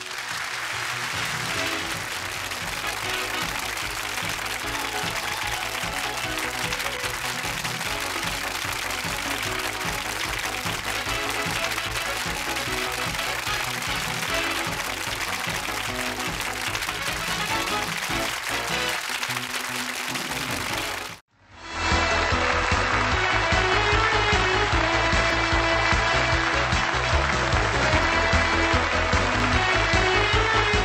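Studio audience applauding over game-show music for about twenty seconds, then the sound cuts off abruptly and a different, beat-driven electronic music track starts.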